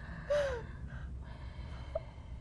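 A woman crying: a sharp gasping breath about a third of a second in, carrying a short falling whimper, followed by quieter breathing.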